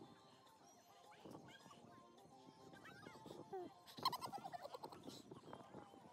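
Faint outdoor background of distant voices, with a brief, louder high-pitched call about four seconds in.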